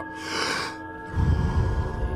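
A deep breath in, a short hiss, followed by a breath out, low and gusty, in Wim Hof method power breathing, over background music of steady held tones.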